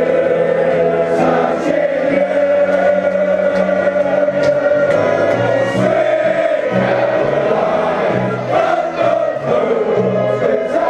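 A large crowd of football supporters singing a chant together in unison, many voices blended into one sustained, loud sound.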